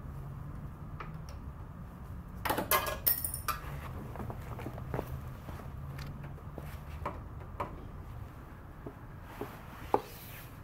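Scattered light metallic clinks and rattles of hand work on a motorcycle, loudest in a cluster about two and a half to three and a half seconds in, over a low steady hum.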